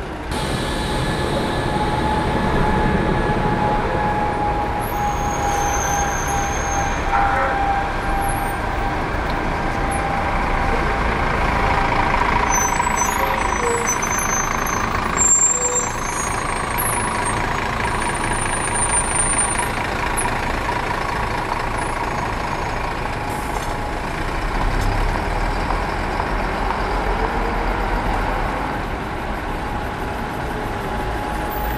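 Diesel bus engines running in street traffic as buses move past close by, with a faint steady whine over the engine noise. The sound shifts abruptly at scene cuts, about fifteen seconds in.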